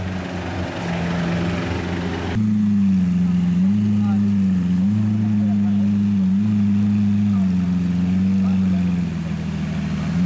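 Lamborghini Aventador's V12 idling, a steady low engine note with slight dips in pitch. It becomes abruptly louder and closer about two and a half seconds in.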